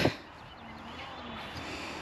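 Faint, steady outdoor background noise, an even hiss with no distinct events.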